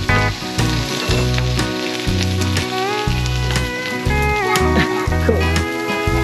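Meat sizzling on a round grill plate over a portable cassette gas stove, under background music with guitar and a steady bass line.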